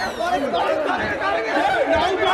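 Several men talking over one another in overlapping chatter. The tail of a falling whistle fades out in the first half second.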